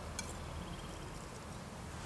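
Quiet steady background noise with one light click of a table knife against a plate shortly after the start.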